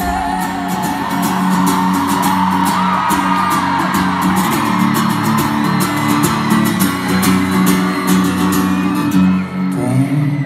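Live pop band playing in a large arena, with guitar and singing over sustained backing.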